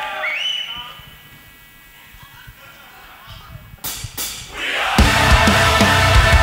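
Crowd shouts and cheers trail off, then about four seconds in the drummer clicks his sticks twice as a two-count. About a second later the full band comes in loud with heavy progressive rock, drums and distorted guitars.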